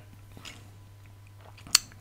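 Quiet room tone with a faint, steady low hum, and a single sharp click near the end.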